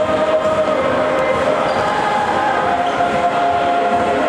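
Indoor football play on a hard sports-hall floor: ball kicks and bounces and players' footsteps, over steady crowd noise in the hall.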